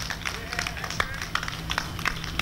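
Outdoor race-start ambience: scattered sharp taps and claps with a faint, brief voice over a steady low hum.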